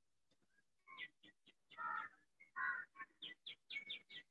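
Birds calling: a string of short high chirps starting about a second in, two longer calls in the middle, then a quicker run of chirps near the end.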